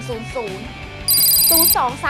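Electronic telephone-ring sound effect: one short, high ring starting about a second in and lasting under a second, over background music.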